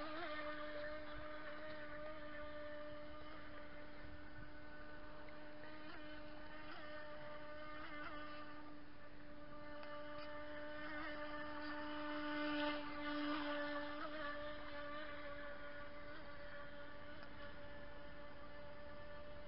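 Radio-controlled model racing boat's motor running at a steady speed, a steady whine over the water that swells briefly about twelve seconds in.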